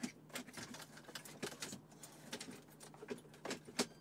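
Irregular plastic clicks, taps and rattles of a Uconnect 8.4-inch screen unit and its wiring harnesses being handled and pushed into the dashboard opening, with a sharper click near the end.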